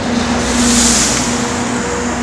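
A vehicle passing on the street, its rushing noise swelling about half a second in and fading by about a second and a half, over a steady low hum.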